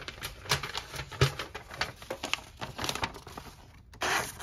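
A sheet of paper rustling and crinkling as it is handled for a paper-slicing test, mixed with a series of sharp clicks and taps from picking up and opening a small folding knife. The loudest click comes about a second in.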